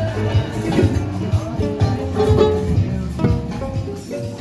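Music led by a plucked guitar, with a regular bass beat.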